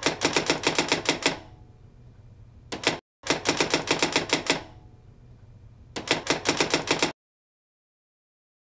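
Typing sound effect: rapid keystroke clicks, about seven a second, in four runs as text is typed onto the screen.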